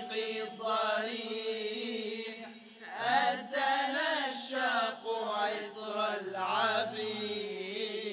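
Male nasheed group singing a cappella in Arabic: a lead voice carries a wavering melody over the other voices' steady held note. The singing dips briefly and a new phrase starts about three seconds in.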